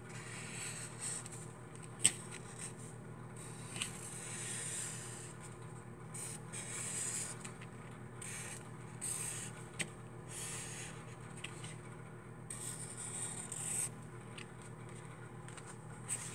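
Sharpie marker tip rubbing on paper as it traces around the edge of a paper template, in faint scratchy strokes that start and stop, with a few light ticks.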